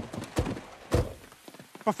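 Car doors thudding shut, two heavy thumps about half a second apart, with a steady hiss of rain underneath.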